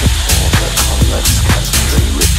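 Housy techno track playing: a steady, driving kick-drum beat with crisp hi-hats over a sustained bass line.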